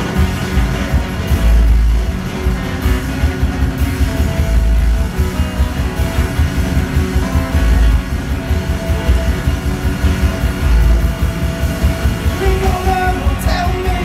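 Live folk-rock band playing through a song, with acoustic guitar, upright bass and drums, and deep bass notes recurring about every three seconds. A voice comes in near the end.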